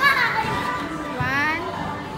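Children's high-pitched squeals on a slide: one cry falls in pitch right at the start, and another voice rises in pitch about a second in.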